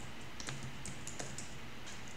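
Typing on a computer keyboard: a quick, uneven run of about seven keystrokes.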